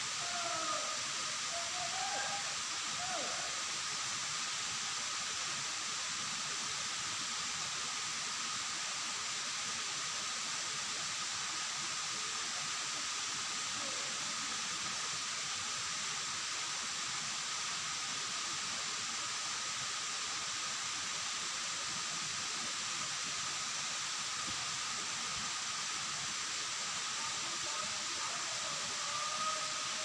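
Steady rush of the waterfall, an even hiss-like roar that never changes, with a faint steady high tone under it. A few short gliding calls sound in the first few seconds and again near the end.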